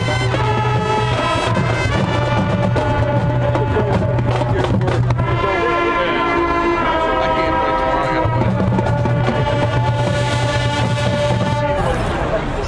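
Marching band playing: brass and woodwinds holding sustained chords over a steady low bass note, with drumline. The music stops near the end.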